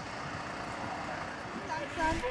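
Steady, even rushing background noise of an outdoor street scene, with no distinct single source, and faint voices coming in near the end.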